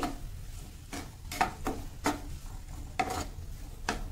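A silicone spatula stirring and scraping chopped onion, garlic and ginger around a nonstick kadhai as they sauté in oil, with a light sizzle underneath. There are about six short scrapes, unevenly spaced.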